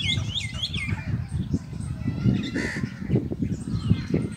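Gusting wind buffeting the microphone in a rough, uneven low rumble, with a quick run of short, chirping bird calls in the first second and a single harsher call about two and a half seconds in.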